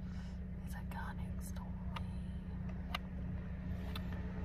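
Steady low hum inside a car, with faint whispered mouth sounds in the first second and a half and a few small sharp clicks later on.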